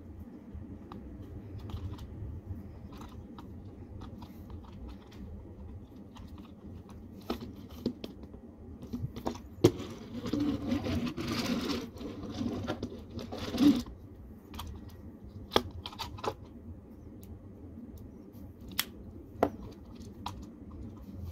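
Plastic Power Rangers Samurai DX Swordfish Zord toy being handled: scattered clicks and knocks of its plastic parts. A longer scraping run from about ten to fourteen seconds in comes as the toy is pushed along the wooden tabletop.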